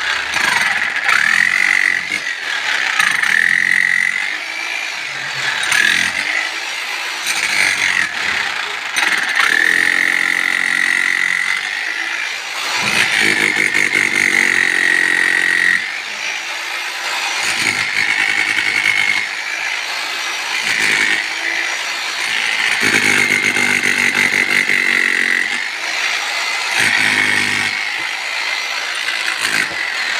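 Bosch 11E electric demolition breaker hammering its chisel into packed earth and rubble: a high motor whine over rapid hammering. It runs in several bursts with short pauses, as the tool is worked and repositioned.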